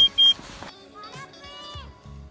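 Rapid high electronic beeping, about four beeps a second, that stops about a third of a second in, followed by quieter short gliding tones.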